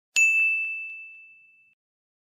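A single bright ding, struck once just after the start and ringing down over about a second and a half.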